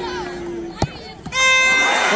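A football struck hard from a penalty kick: one sharp thud a little under a second in, over a low murmur of spectators. Moments later a loud, steady, high-pitched held tone begins and runs on.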